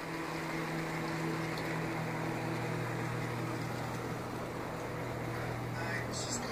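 Motorized curtain track running as automatic drapes draw open: a steady, low electric hum.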